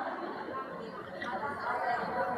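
Faint, indistinct chatter of several audience members calling out answers at once, off-microphone in a large hall.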